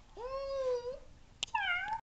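Domestic cat meowing twice: a long, even meow, then a higher, shorter one that dips and rises again, with a single sharp click between them.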